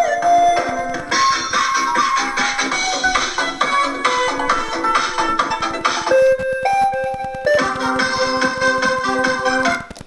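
Built-in demo music playing from a kids' 12V ride-on motorcycle's speaker: an electronic keyboard-style tune with a steady beat. The tune changes about six seconds in and cuts off just before the end.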